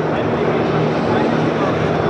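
Steady, even drone of radio-controlled model trucks running, with a low hum underneath, over constant background crowd chatter.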